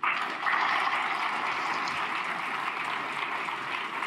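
Audience applauding, a steady sound of many hands clapping that starts suddenly.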